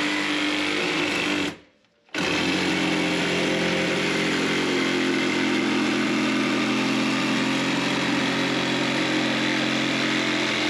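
Milwaukee M12 Fuel Hackzall one-handed reciprocating saw running steadily as it cuts into a bathroom vanity top. The sound drops out for about half a second about a second and a half in, then runs on steadily.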